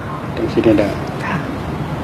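A man's voice speaking a few Thai words over a steady background of room or outdoor noise.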